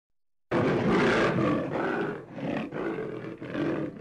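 A big cat's roar played as a sound effect. It starts abruptly about half a second in and runs on in several long surges.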